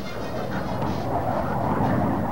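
Jet engine noise of a Vought F8U Crusader in flight: a steady rushing sound, swelling slightly toward the end.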